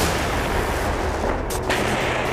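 Heavy weapons fire in combat: a continuous low rumble of gunfire with two sharp shots about a second and a half in.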